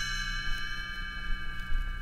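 Read-along record's page-turn chime ringing on in several steady bell-like tones, stopping near the end. It is the signal to turn the page in the book.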